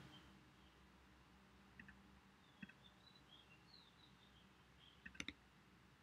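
Near silence with a few faint computer mouse clicks: a pair about two seconds in and another pair about five seconds in.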